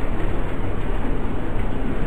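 Steady rushing hiss with a low rumble: the lecture recording's background noise, heard alone in a pause in the talk.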